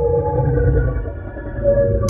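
A low, droning music sting of held, slightly wavering tones over a heavy bass rumble, cutting off suddenly at the end.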